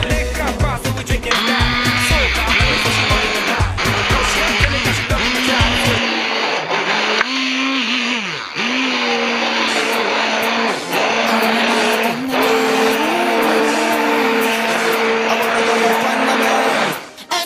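Hand-held immersion blender running in a pot of cooked split peas, puréeing the dhal, its motor pitch dipping and recovering as it works through the peas. Background music plays along with it, its bass beat dropping out about six seconds in.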